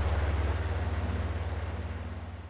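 Diesel locomotive engine idling sound effect: a steady low throbbing rumble with a fast even pulse, beginning to fade out near the end.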